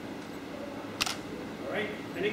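A single sharp click about a second in, followed near the end by a short voice sound, without words.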